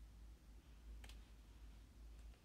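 Near silence with a steady low hum, broken about a second in by one small, quick click from a handheld smartphone being handled.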